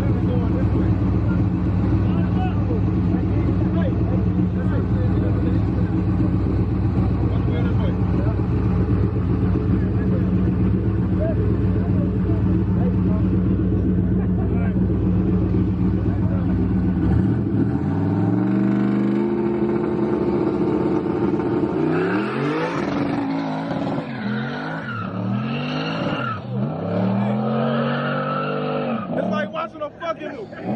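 Street-race car's V8 idling loudly and steadily, then launching about seventeen seconds in and accelerating hard away, the engine pitch climbing and dropping back several times as it shifts up through the gears while it fades into the distance.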